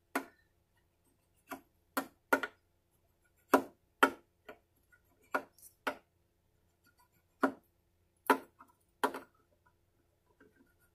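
Metal fret rocker clicking against the frets of an acoustic guitar as it is set down and tipped fret after fret, a dozen or more sharp clicks at uneven spacing. This is a check of the levelled frets for high spots.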